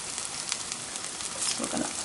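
Cheese-and-olive fritters sizzling and crackling in hot olive oil in a frying pan, a steady hiss with many small pops.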